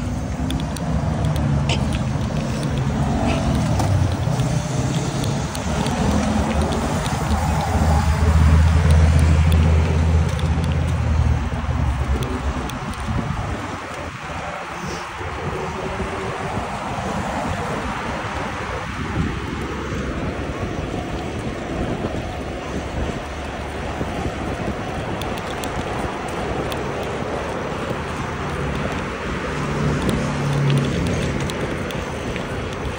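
Road traffic: a motor vehicle's engine running close by with a steady low hum for about the first twelve seconds, then an even rush of cars passing on the road.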